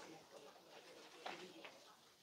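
Near silence: faint room tone, with one brief faint sound about a second and a quarter in.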